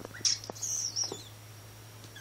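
Young Sphynx kittens giving a few short, high, thin squeaking mews in the first second, then falling quiet.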